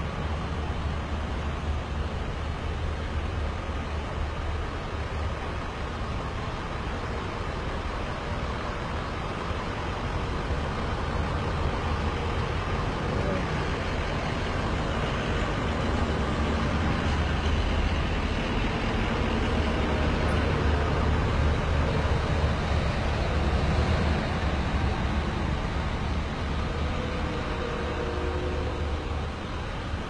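Steady low rumble of motor-vehicle engines, swelling gradually through the middle and easing near the end.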